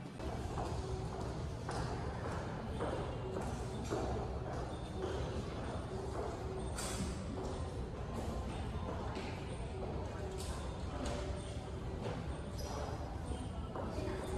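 Footsteps on a hard floor, a little under two steps a second, over a steady hum of indistinct voices in a large hall.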